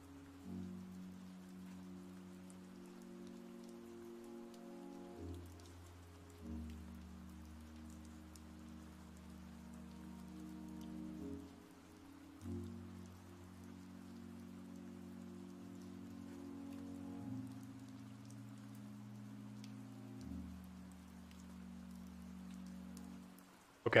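Quiet background music: soft sustained low chords that change every few seconds, over a faint rain-like patter.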